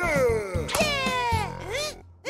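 Cartoon cat character's wordless vocal cries: two long exclamations, each falling in pitch, over background music.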